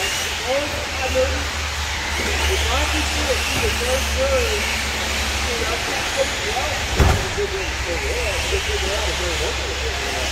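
1/10-scale RC short course trucks racing, their motors whining up and down as they speed up and slow down, with a single sharp knock about seven seconds in. Under it a steady low hum and indistinct voices.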